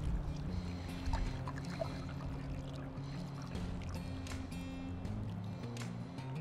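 Background music with a slow, steady bass line, over the faint sound of thick liquid being poured from a steel bowl into a pressure cooker pot.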